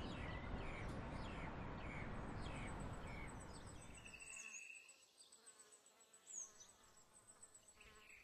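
Faint outdoor ambience: small birds chirping in short, repeated falling calls about twice a second over a low rumbling haze. The haze drops away after about four and a half seconds, leaving fainter chirps and a thin, steady high whine.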